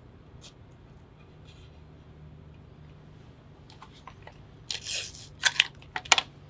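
Paper drafting tape being pulled and torn off its dispenser: faint handling clicks, then about five seconds in a short ripping sound followed by a couple of quick sharp snaps.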